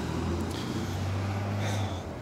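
Low, steady hum of a motor vehicle's engine, dropping away near the end.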